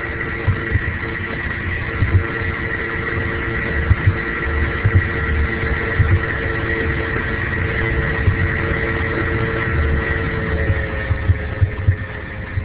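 Steady hum with a few held tones and a higher whine, over irregular low rumbling thumps: open-microphone background noise on a low-bandwidth internet webinar audio line.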